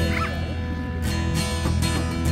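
Background acoustic guitar music with steady strumming. A brief high, curving cry sounds just after the start.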